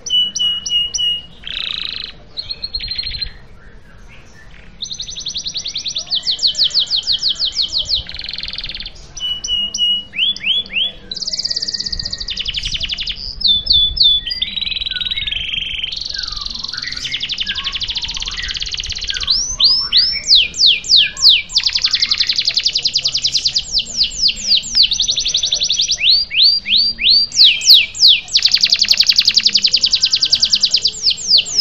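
Domestic canary singing a long rolling song: runs of rapid, high repeated notes and trills, phrase after phrase with brief pauses. A quieter gap comes a few seconds in, and the song grows louder and denser in the second half.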